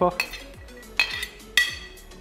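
A metal spoon clinking against a stainless steel cooking pot: three sharp clinks, each with a short ring, the last the loudest.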